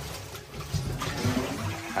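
Water splashing and pouring in a stainless-steel bowl in a kitchen sink as a mesh bag of crabs is rinsed and lifted out and the bowl is tipped to empty it.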